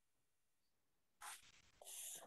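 Near silence on a video call, broken by a faint, short rustle a little over a second in and another faint rustle starting near the end.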